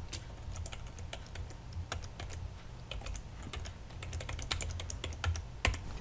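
Typing on a computer keyboard: a run of quick key clicks at an uneven pace, with one louder click near the end, over a low steady hum.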